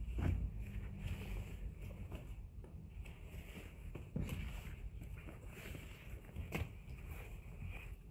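Faint rustling of pieced quilt fabric being flipped over and handled on a cutting mat, with a few soft brushes against the mat over a low steady room hum.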